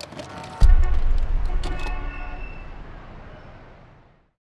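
Produced logo sound effect: a deep boom about half a second in that fades away over about three seconds, with a few sharp clicks and a short steady tone in the middle.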